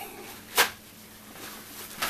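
A single sharp tap about half a second in, a hard object knocking against another, over quiet room tone.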